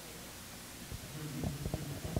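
Low, muffled laughter and chuckling from people in the room, starting about a second in, with a few soft thumps.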